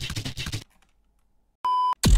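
A clipped fragment of electronic music with rapid clicky hits cuts off about half a second in. After a second of silence, a short steady electronic beep sounds just before the end.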